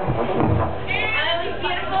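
Voices calling out across a bar room, with high rising shouts about a second in and again at the end, answering the stage, over a low steady hum from the band's amplification.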